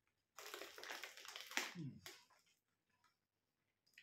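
A rough, noisy burst of about a second and a half from the mouth of a man eating Carolina Reaper pork scratchings, ending in a short falling grunt.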